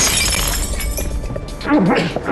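A drinking glass smashing with a sudden crash, the shattered pieces tinkling away over about a second, over dramatic background music.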